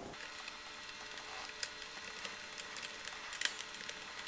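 Small screwdriver driving screws into the truck's threaded frame: faint scraping and light clicks of tool and screw, with a couple of sharper ticks.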